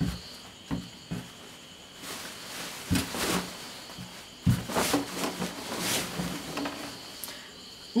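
Printed dress fabric rustling and swishing as a large length of it is handled and folded in two by hand, with a few light knocks in between.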